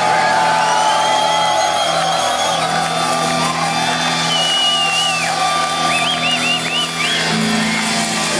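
Live crossover thrash band playing loudly, with distorted guitars and drums, and the crowd shouting along. In the second half a high lead guitar line wavers and bends up and down in pitch in quick repeated arcs.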